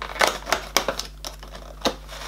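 Perforated cardboard door of an advent calendar being picked and torn open with the fingers: a quick run of sharp clicks and small tearing snaps, the loudest one near the end.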